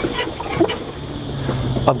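A few small metallic clicks from a stainless wire-rope clamp and turnbuckle being handled on a boat's steering cable, with a low steady hum coming in about halfway through.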